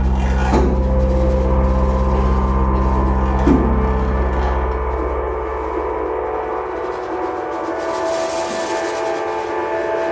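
Experimental live music: a sustained drone of many steady layered tones, with single drum strikes about half a second and three and a half seconds in. The low bass layer of the drone fades out around five seconds in, leaving the higher tones, and a brighter, hissing high wash, like cymbals, rises near the end.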